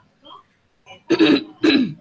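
A woman clearing her throat with two short, loud coughs in quick succession about a second in.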